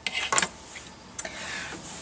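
Brief handling noises: a few soft clicks in the first half second and one more about a second in.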